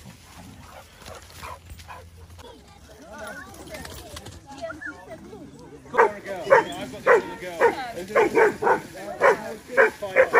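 Vizslas barking and yipping as they play-fight, a quick run of sharp barks about two a second starting about six seconds in, after a quieter stretch.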